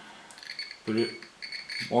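Continuity buzzer of a DT-9205A digital multimeter beeping with its probe tips touched together, a thin high-pitched tone that cuts in and out several times before holding steady near the end. The beep signals a closed, unbroken circuit.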